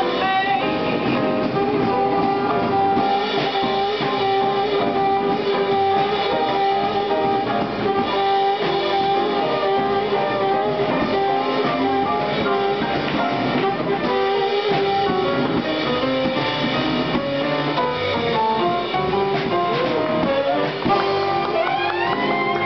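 Live jazz band playing, with a woman singing and a saxophone.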